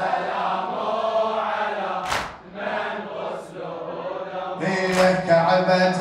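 Unaccompanied male chanting of a Shia lament (latmiya) in a drawn-out, melodic recitation style, softer in the middle and swelling again near the end.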